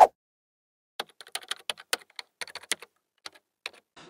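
Quick, irregular keyboard typing: about twenty sharp keystroke clicks over roughly three seconds, starting about a second in, with dead silence between them. A short blip sounds at the very start.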